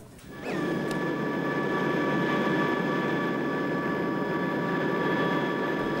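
Steady aircraft engine drone with a constant high whine, starting about half a second in after a brief rising pitch.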